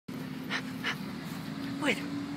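Two short breaths from a Lagotto Romagnolo dog close to the microphone, about half a second and just under a second in, over a steady low hum.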